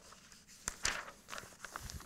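Irregular light taps and scuffs, several in quick succession with the loudest just under a second in, from someone moving about at a blackboard.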